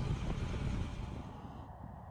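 Steady low rumbling background noise with some hiss, fading down over the last half second.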